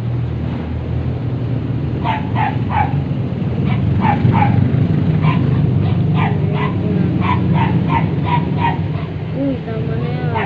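A dog barking in quick runs of two to four short, sharp barks, over a steady low hum.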